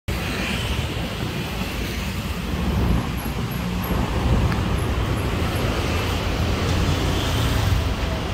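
Steady city road traffic noise: a continuous low rumble of passing cars and motorcycles.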